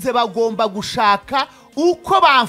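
A rapped vocal over music.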